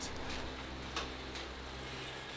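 Road bike on an indoor turbo trainer being pedalled: a steady low hum with a few faint ticks.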